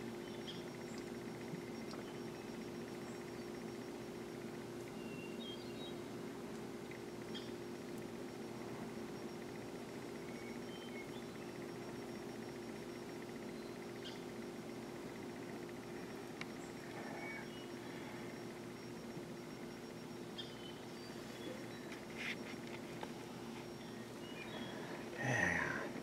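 Quiet woodland ambience: a steady low hum under faint, scattered short bird chirps.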